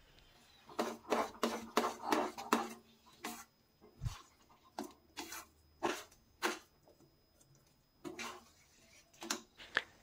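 Metal spatula stirring thick upma in a stainless-steel kadai: faint, irregular short scrapes and taps against the pan, starting about a second in and growing sparser in the second half. Grated coconut is being mixed in.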